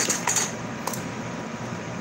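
A few light clicks and taps from handling a small cosmetic product and its packaging, mostly in the first half-second, over a steady background hiss.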